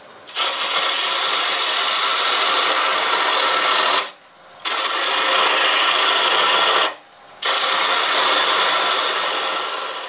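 Parting tool cutting a tenon into a spinning walnut blank on a wood lathe: a loud, rough scraping hiss. It comes in three passes, with short breaks about four and seven seconds in where the tool is eased off.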